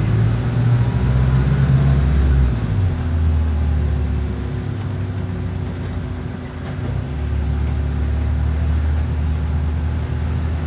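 A double-decker bus running, heard from inside the passenger saloon: a loud, low, steady drone with a hum. It eases off about six seconds in and picks up again a second later.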